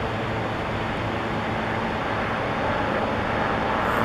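Helicopter flying by overhead: a steady engine and rotor drone that slowly grows louder.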